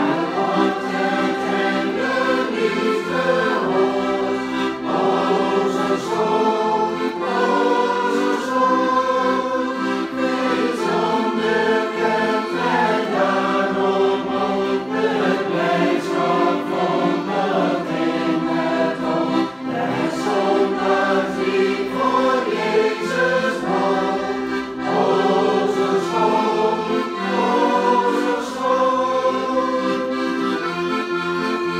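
A group of people singing a Dutch Christian hymn together, accompanied by a piano accordion playing sustained chords.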